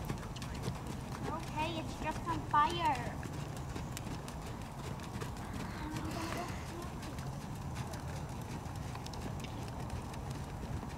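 Hoofbeats of several horses walking and trotting over a sand arena, with a voice calling out briefly about two seconds in.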